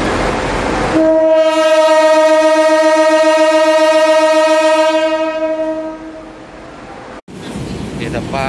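Horn of a CC 201 diesel-electric locomotive giving one long, steady blast of about four to five seconds. It starts about a second in over a rumbling background and fades away near the end.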